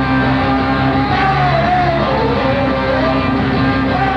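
Rock band playing live, a steady full band sound with a lead line that bends up and down in pitch.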